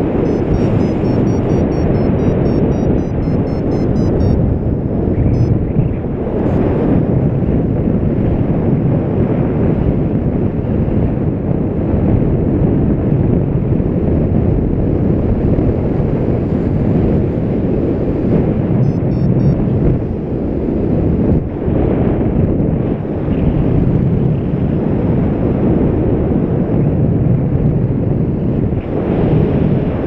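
Airflow buffeting the microphone of a paraglider's camera in flight: loud, steady wind rumble.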